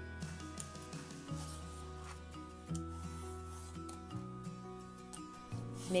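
A Y-shaped vegetable peeler scraping strips of skin off a raw acorn squash in repeated, uneven rasping strokes. Soft background music with low held notes plays throughout.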